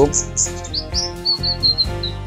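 Small caged sunbird (kolibri ninja) chirping in short high notes, ending in a quick run of about five even chirps, over background music.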